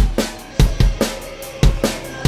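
Drum kit played live in a steady rock beat, with bass drum thumps and snare hits.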